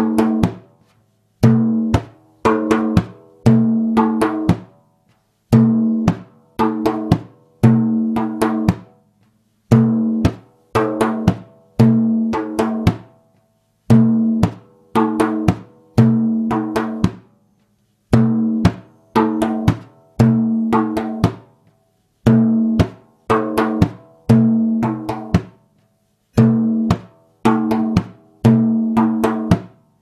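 A large hand-held frame drum played with bare hands in the Middle Eastern maqsum rhythm, as doom pa taka pa, doom taka pa: deep ringing doom strokes, high dry popping pa strokes and quick taka strokes from the ring-finger pads near the rim. The pattern repeats steadily, one cycle about every four seconds.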